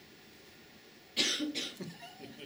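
A man's short burst of breathy laughter about a second in, in a few quick pulses.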